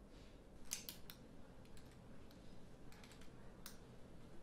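Faint typing on a laptop keyboard: scattered keystrokes in small irregular groups with short pauses between.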